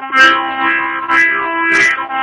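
Harmonica in the key of C playing a melody in sustained chords, with a breathy attack at each of about three new notes.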